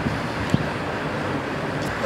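Steady outdoor background noise with wind on the microphone, and a faint click about half a second in.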